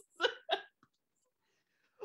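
A woman laughing: two short bursts of laughter in the first half second, then near silence.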